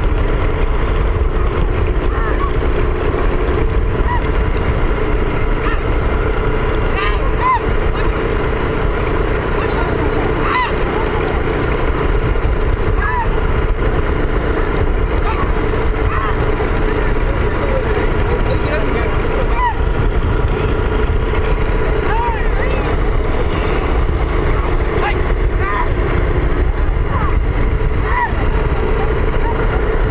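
A motor vehicle running steadily under heavy road and wind noise, with short shouts from men rising over it every few seconds.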